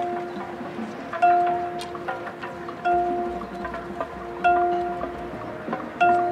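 A single bell-like note from the marching band's front-ensemble pitched percussion, struck about every one and a half seconds, three times, each stroke ringing out and fading, in a soft passage of the show.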